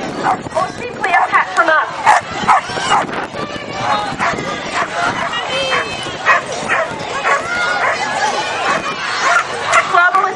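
Dogs barking repeatedly, with short yips among the barks, over people's voices: flyball dogs keyed up during a race.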